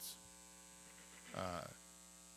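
Steady low electrical mains hum in the recording, with a short spoken 'uh' about one and a half seconds in.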